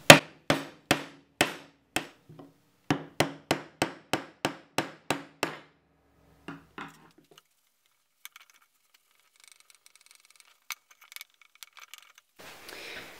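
Hammer driving a punch against the old rear main crankshaft oil seal to knock it out of its seal carrier, which rests on wooden blocks: about a dozen sharp blows, two or three a second, stopping about five and a half seconds in.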